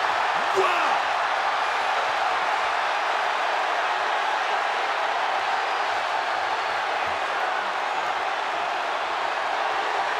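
A large arena crowd cheering and shouting steadily in reaction to the wrestling ring collapsing.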